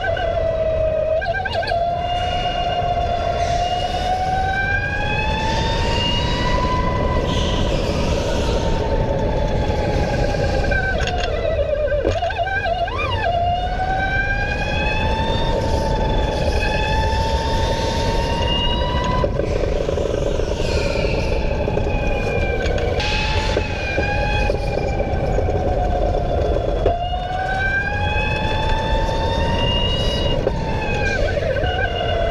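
Electric go-kart motor whining, its pitch climbing as the kart accelerates and dropping as it slows for the corners, over and over every six to eight seconds, above a steady low rumble.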